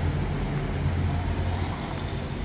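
Steady low rumble with an even background hiss, of the kind left by distant road traffic or handling on the microphone.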